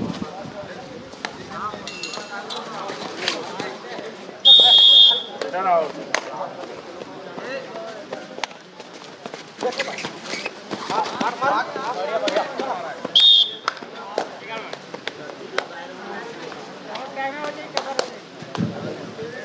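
Referee's whistle blown twice in a kabaddi match: a loud shrill blast about four and a half seconds in and a shorter one near thirteen seconds. Players' and crowd voices and shouts run throughout, with scattered sharp slaps and knocks.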